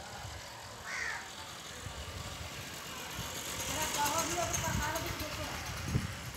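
Indistinct voices talking in the background, not close to the microphone, over a low uneven rumble.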